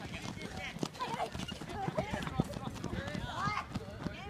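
Boys' voices shouting and calling out across a football pitch during play, with a few sharp knocks in between.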